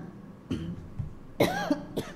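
A woman coughing at a church lectern microphone: small throat sounds, then one louder cough about one and a half seconds in, breaking off her Bible reading.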